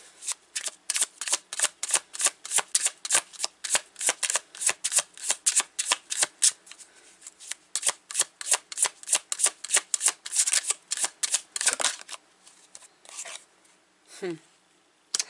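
A tarot deck being shuffled by hand, with quick regular card slaps about four a second that stop about twelve seconds in, followed by a few softer card sounds.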